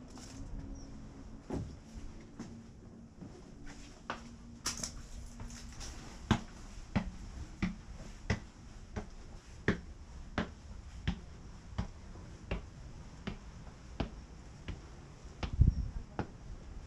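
Footsteps on brick and stone steps: sharp, clicky steps that fall into a steady walking pace of about one every 0.7 s in the second half, echoing in a narrow brick stairwell. A low thump near the end.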